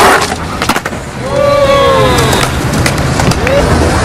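Skateboard wheels rolling on concrete with a few sharp clacks of the board against the ledge in the first second. About a second in, a drawn-out pitched call glides downward, with a shorter one near the end.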